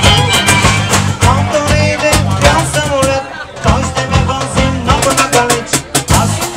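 Live band playing an upbeat dance tune on fiddle, electric guitar, bass and drum kit, with a brief break about halfway through before the full band comes back in.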